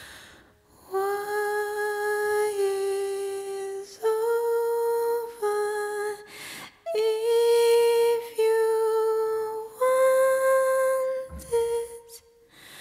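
A woman's voice humming a slow wordless melody in long held notes, stepping between neighbouring pitches, with short pauses for breath between phrases and almost nothing behind it.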